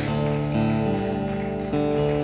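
Acoustic guitar played softly: a chord rings and sustains, with a new chord coming in near the end.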